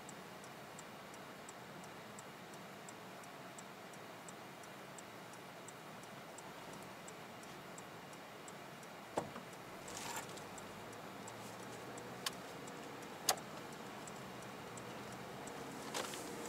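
Turn-signal indicator of a Toyota Vellfire ticking steadily and faintly in the quiet cabin of the stopped car, as it waits to turn right. In the second half come a few sharp clicks and a short rustle.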